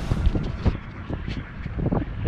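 Water rushing under an inner tube sliding down a water-park tube slide, with wind buffeting the camera microphone and a few dull thumps.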